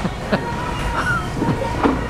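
A man laughing briefly, with a few short breathy laugh sounds, over a constant low room hum and a faint steady high tone from the restaurant's equipment.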